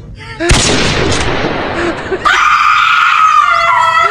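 A sudden loud bang about half a second in, dying away over a second or so. Then, from about halfway, a long, steady high-pitched sound is held to the end.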